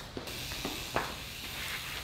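A low, steady background hiss with three faint clicks or knocks in the first second.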